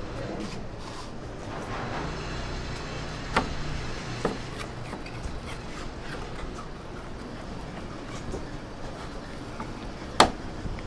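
A large kitchen knife cutting through a cooked pig's head on a metal tray, with two sharp knocks about three and a half and four seconds in, over a steady rumbling background.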